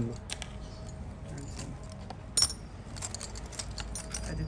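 Metal rings clinking lightly against each other and their display trays as they are handled, in scattered small clicks, with one sharper ringing clink about two and a half seconds in.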